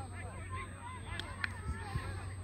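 Open-air sound of a soccer game: distant calls and shouts from the field, with a couple of sharp knocks in the second half, the loudest about a second and a half in.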